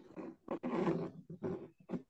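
A person's voice: short vocal sounds, then one longer, louder drawn-out sound from about half a second in to just past one second, with no clear words.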